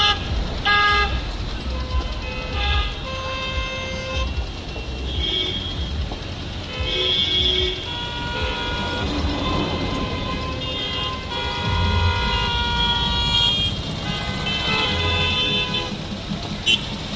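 Car horns honking again and again, often several at once with overlapping notes, over the steady low rumble of a slow-moving line of SUVs and cars.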